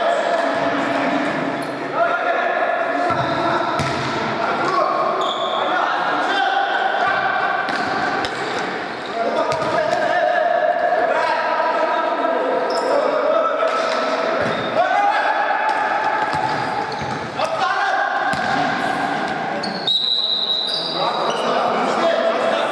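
Futsal ball being kicked and bouncing on a hard sports-hall floor among players' shouts, all echoing in a large hall. A short, high whistle sounds near the end.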